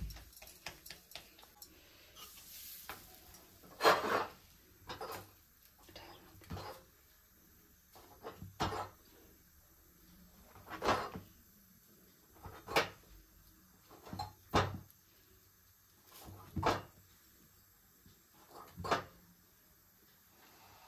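Intermittent kitchen clatter: separate sharp knocks of utensils against a pan or griddle, about one every one to two seconds, while maize-flour rotis cook on a gas stove.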